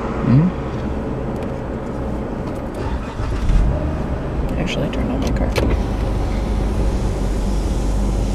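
Car engine running steadily, heard from inside the cabin as a low rumble, with a few light clicks in the middle and a brief hum of a voice near the start.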